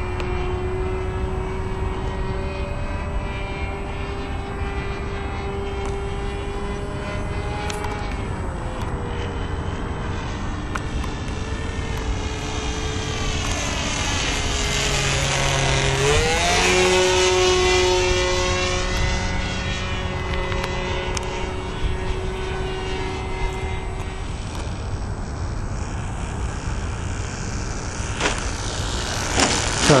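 O.S. .40 engine of a Hobbico Superstar 40 radio-controlled airplane buzzing steadily in flight. Its pitch dips briefly about eight seconds in. Around the middle it grows louder and its pitch dips and rises again as the plane passes closest, then it settles back.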